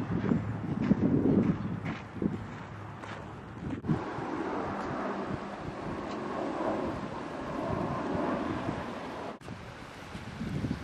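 Wind buffeting the microphone: uneven gusts of low rumbling for the first couple of seconds, then a steadier rushing.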